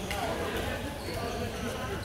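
Badminton racket striking a shuttlecock during a rally: a sharp hit right at the start and a fainter one about a second in, over voices echoing in a large hall.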